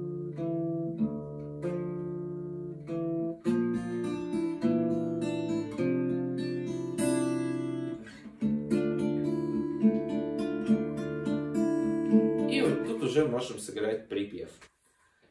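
Cort acoustic guitar fingerpicked in a slow arpeggio pattern: the fifth and fourth strings are plucked together, then the first and second strings and the open first string, with the notes left ringing. The chord changes about three and a half seconds in and again past eight seconds, and the playing stops near the end.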